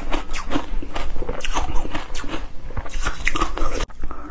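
Close-miked eating sounds: a person biting and chewing a soft, wet blue food, with many short wet clicks and smacks. Near the end the sound drops out for an instant.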